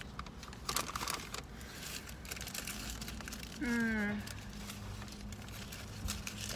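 Paper sandwich wrapper crinkling and rustling as it is unfolded by hand. A short voiced sound with a falling pitch, like a brief hum, comes a little past halfway.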